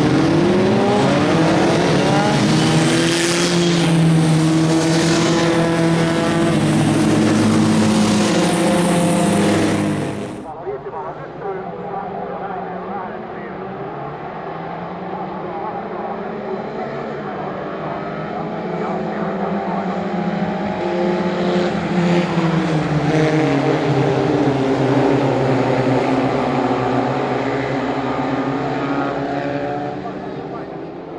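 A pack of historic Formula Vee and Formula B single-seaters accelerating hard, several engines rising in pitch together and stepping up through the gears. About ten seconds in the sound drops to a quieter, more distant take of the cars running. Later the engines climb in pitch again as the cars accelerate past.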